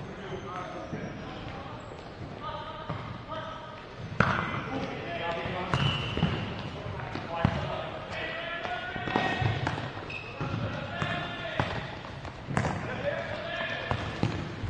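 Futsal ball being kicked and bouncing on an indoor court, a few sharp knocks scattered through, under players' shouts and calls.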